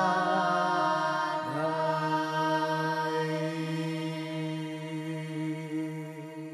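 Slow Orthodox liturgical chant sung in long held notes, moving to a new note about a second and a half in and slowly getting quieter.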